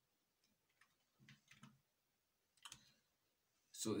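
A few faint, scattered clicks of computer keyboard keys being typed, the loudest about two and a half seconds in.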